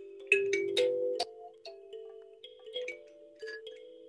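Kalimba (thumb piano) played with both thumbs plucking its metal tines: a quick run of bright, ringing notes in the first second, then softer notes that ring on and overlap one another.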